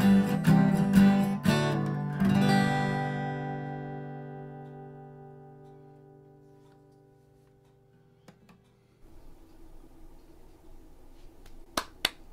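Steel-string acoustic guitar strumming the closing bars of a song and ending on a final chord that rings out and fades away over about six seconds. Faint room noise follows, with a couple of clicks near the end.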